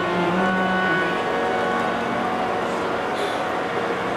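Harmonium holding steady notes between sung lines of Sikh kirtan, with the singer's last held note dying away in the first second.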